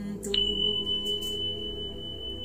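A high, pure chime is struck about a third of a second in and rings on as one steady tone, over a soft low musical drone.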